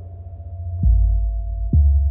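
Ambient electronic music: a deep sub-bass throb over a steady, thin high tone. The throb swells in twice, about a second in and again near the end, each time with a soft click at its start.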